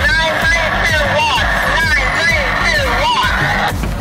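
Background music with a steady beat, over a voice coming through a handheld two-way radio, tinny and cut off at both low and high pitch, reading out the solar array's power.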